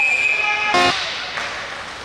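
Hockey referee's whistle blowing one long steady blast to stop play, ending about half a second in, followed by a brief buzzy blip and then low arena background.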